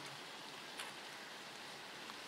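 Faint, steady background hiss in a gap in a man's talk, with one faint tick a little under a second in.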